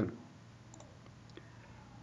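A few faint clicks of a computer mouse, about a second in, against quiet room tone.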